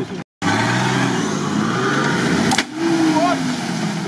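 An off-road SUV's engine revving hard as the stuck vehicle, hung up on its frame in deep mud, tries to drive free. The sound cuts out briefly near the start, and the revving eases about two-thirds of the way through.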